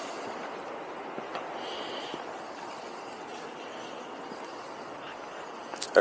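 Steady outdoor background noise: an even hiss with no distinct events, and a faint brief high tone about two seconds in.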